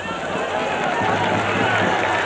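Stadium football crowd cheering and shouting in a continuous mass of voices that swells gradually, reacting to a shot at goal.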